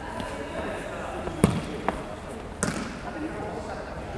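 A futsal ball being kicked and bouncing on a wooden gym floor: three sharp thuds, the loudest about one and a half seconds in, the others shortly after.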